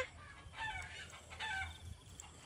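A chicken clucking faintly, two short calls, the first about half a second in and the second about a second and a half in.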